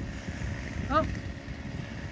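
A dead tree riddled with woodpecker holes coming down: a low, irregular rumble and crackle of the trunk and breaking limbs.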